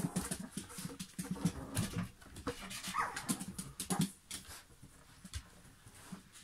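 A small dog pawing and scratching at a cardboard box: a run of quick scrapes and taps, with a short high whimper about halfway through.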